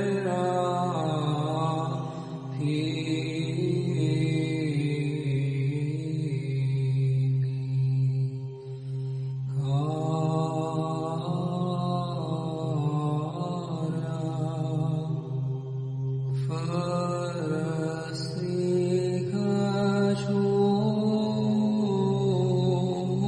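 Romanian Orthodox Byzantine (psaltic) chant: a melismatic melodic line sung over a steady held ison drone. The melody pauses briefly about 9 and 16 seconds in while the drone carries on.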